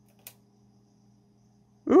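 Faint steady low electrical hum, with a single faint click about a quarter second in; a voice exclaims "ooh" right at the end.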